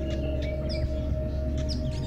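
Steady background music drone with short, falling bird chirps scattered over it.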